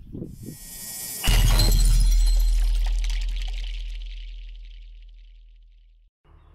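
Intro logo sound effect: a rising high swoosh, then a sudden hit with a deep boom and a high ringing tail that fades out slowly over about four seconds.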